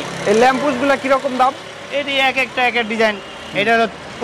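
Speech: a man talking in short phrases, over faint steady street background noise.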